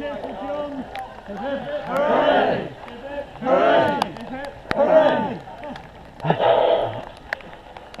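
Several men's voices shouting and cheering without clear words: about five loud calls, each rising and falling in pitch.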